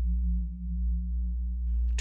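Low, steady drone of a few held tones whose loudness swells slowly, like a synthesizer pad in a music score.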